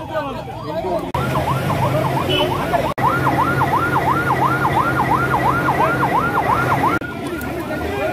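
Emergency vehicle siren in a fast yelp, its pitch rising and falling about two and a half times a second over a low steady hum. It breaks off briefly about one, three and seven seconds in, and is loudest in the middle stretch.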